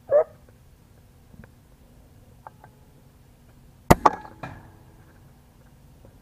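FX Impact M3 air rifle: a sharp crack about four seconds in, then a second click just after it and a brief metallic ring that fades within a second.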